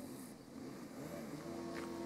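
Faint engine of a tractor working a neighbouring field, running steadily; its note sags briefly about half a second in, then picks up and holds steady again.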